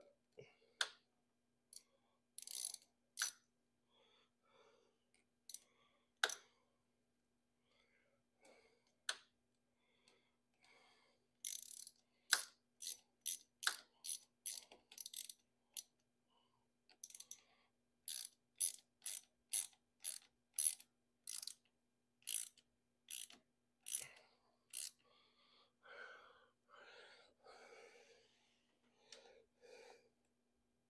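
Ratchet wrench clicking as it tightens a hose clamp on a coolant hose: scattered clicks at first, then steady runs of about two clicks a second with short pauses between runs, and softer handling noise near the end.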